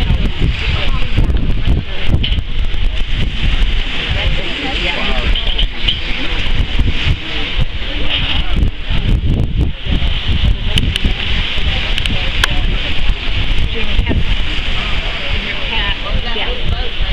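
Wind buffeting the microphone, a heavy, continuous low rumble.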